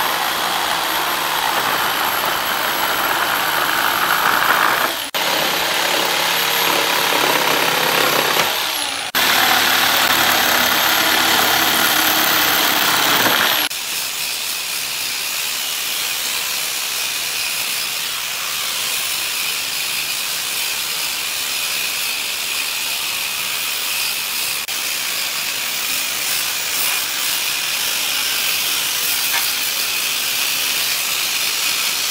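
A cordless drill runs in three long bursts of a few seconds each, its high motor whine dropping away at the end of each burst. About halfway through, an angle grinder fitted with a sanding disc takes over and runs steadily, sanding the pine pallet boards.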